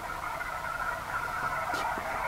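HF amateur radio transceiver's speaker on receive on the 20-metre band, giving out a steady, thin band-noise hiss between transmissions, with a light click near the end.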